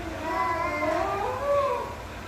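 A baby whining in one long wavering cry that rises in pitch, fussing in fright at a robot vacuum.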